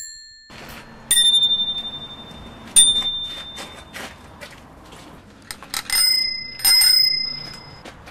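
A bicycle bell rung again and again. There is a ding right at the start, a rattling trill about a second in, and a single sharp ding, the loudest, near three seconds. Two more trills follow around six and seven seconds, each ringing on and fading, with light clicks and rustling between the rings.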